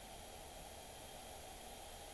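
Steady faint hiss of a recording's background noise, with nothing else sounding.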